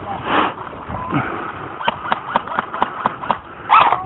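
A rapid string of about ten sharp cracks, roughly seven a second for about a second and a half, from an airsoft rifle firing a burst. A brief louder noise comes about half a second in and another just before the end.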